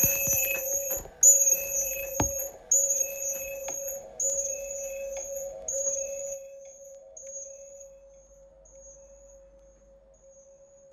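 An electronic chime tone rings for about a second and repeats roughly every one and a half seconds. Each repeat is fainter than the last, and the tone is barely audible after about eight seconds. A few knocks sound in the first seconds, the loudest a low thump about two seconds in.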